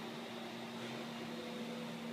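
Steady ventilation hum, fan-like, with a low steady tone running through it.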